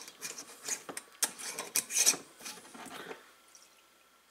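Metal screw-on lid being twisted onto a glass mason jar: a run of small rasping scrapes and clicks that stops about three seconds in.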